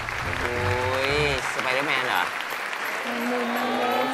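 Studio audience applauding over show music, with a low beat that drops out about a second and a half in. Pitched musical or vocal lines follow, ending on a held low note.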